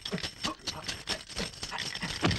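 A rapid, even run of sharp clicks, about seven a second, with faint voice sounds beneath.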